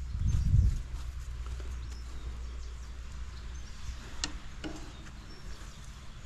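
Outdoor ambience: a steady low rumble with a loud gust of wind on the microphone in the first second, and faint scattered bird calls. A single sharp click sounds about four seconds in.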